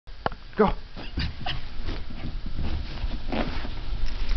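A dog rubbing and rolling on a towel laid over carpet to dry himself after a bath: rustling and scuffling with soft low thumps, and a short vocal sound near the end.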